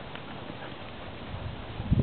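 Silken windhounds' paws thudding on the grass as they run and play close by: a string of irregular low thuds that grows louder near the end, over a faint steady outdoor hiss.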